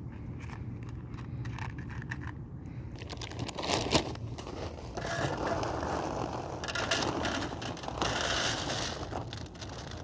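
A scraping, crackling rustle close to the microphone, growing louder about halfway in with a sharp knock near four seconds, from a hand rubbing fur and the phone. In the first few seconds, faint crunching ticks of cats chewing dry kibble.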